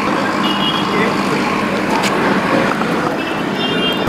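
Street traffic noise with a steady engine hum from a vehicle, and a short high beeping twice, about half a second in and near the end.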